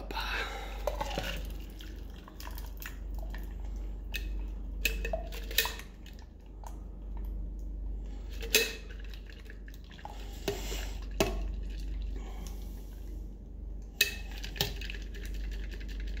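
A shaken cocktail strained from a stainless-steel shaker through a spring strainer: scattered metallic clinks and knocks of ice against the tin and strainer, over a faint trickle of the pour.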